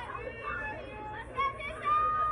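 High-pitched voices of players and spectators calling out and chattering, overlapping. A loud drawn-out shout begins near the end.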